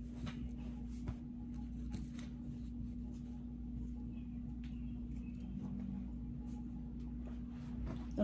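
Faint rustling and light scratching of clothes being put on, over a steady low hum in a small room.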